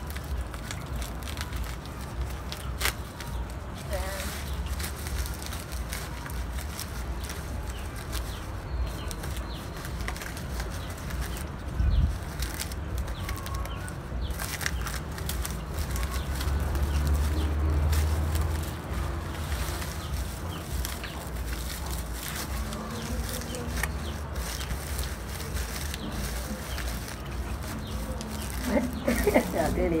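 Dry banana leaves and banana fibre rustling and crackling as a leaf-wrapped heap of plantain is tied up by hand, over a steady low rumble, with a single thump about twelve seconds in.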